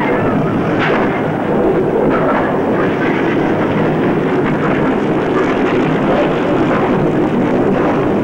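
Loud, continuous rumbling din with a few faint crashes in it, like the sound-effects track of a volcanic eruption.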